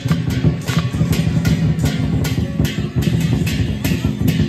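Lion dance percussion: a large drum beating steadily under brass hand cymbals clashing about four times a second.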